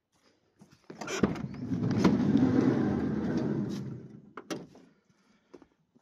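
Side sliding door of a 2010 Vauxhall Movano van being opened: a click as the latch releases about a second in, then about three seconds of rumbling as the door rolls back along its rail, and a couple of sharp clicks as it stops in the open position.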